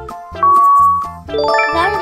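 Electronic sound effects over background music with a steady beat. About half a second in, a long, loud ding marks the end of the countdown timer. Near the end a bright, sparkling chime flourish of many tones signals the answer reveal.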